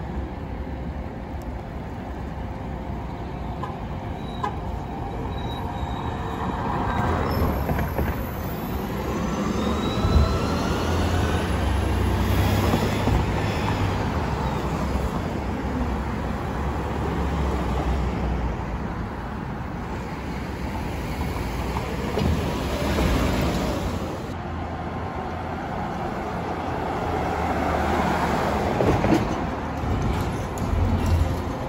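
Red VIA city transit buses and street traffic passing on a downtown street, the noise swelling as each vehicle goes by. A rising whine comes from a vehicle speeding up about a third of the way through.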